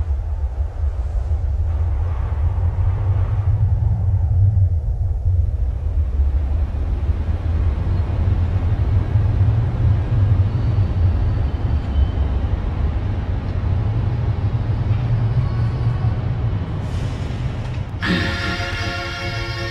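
A deep, steady rumble with a faint hiss above it, unbroken for the whole stretch. Music with clear notes comes in right at the end.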